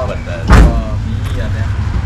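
Low, steady rumble of an idling vehicle engine, with a single loud thump about half a second in.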